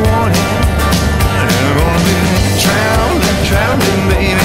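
Background music: a song with singing over a steady drum beat.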